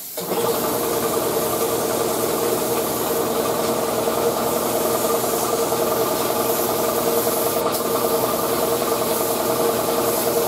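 Shop air compressor running steadily, a constant motor hum with a mechanical chatter, cutting in at the start. The air hiss of the paint spray gun runs along with it.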